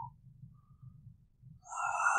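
Quiet pause in narration: faint low room hum, with a breath near the end as the next words begin.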